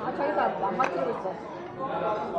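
Chatter of several voices talking in a restaurant dining room, with a single brief click a little before the one-second mark.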